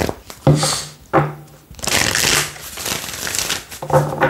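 A deck of tarot cards being shuffled by hand: papery sliding and slapping of cards in short bursts about half a second and a second in, then a longer shuffle around two seconds in.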